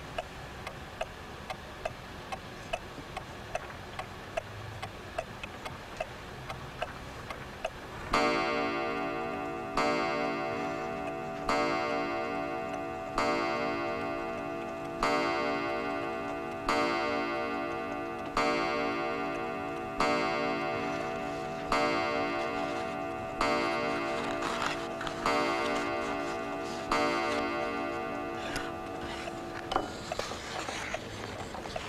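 An old mantel clock ticking steadily. About eight seconds in it begins striking the hour: about a dozen deep, ringing chimes, each about 1.7 s apart and dying away before the next.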